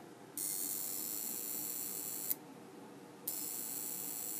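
High-pitched electrical hiss with several steady whining tones from a high-voltage spark-gap circuit, switching on shortly after the start, cutting off with a click a little past two seconds in, and coming back about a second later.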